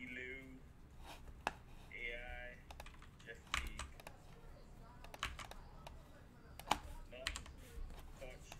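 Stiff chrome trading cards handled and flicked through one by one, a run of irregular sharp clicks and snaps, the sharpest about a second and a half in and again near the end.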